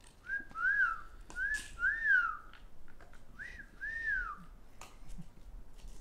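Whistling: three pairs of short notes, each rising and falling in pitch, about a second and a half apart.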